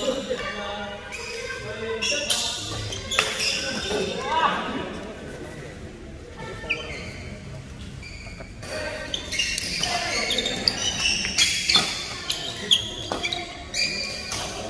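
Badminton doubles play in a large hall: sharp strikes of rackets on the shuttlecock and squeaks of shoes on the court floor, mixed with players' voices, with a lull between rallies in the middle.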